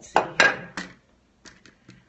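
Plastic pens clicking and clattering against one another while someone picks through them to choose a colour: a few sharp clinks in the first half second, then faint scattered ticks near the end.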